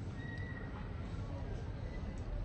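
A short, thin, high-pitched call about a quarter second in, over a steady low rumble.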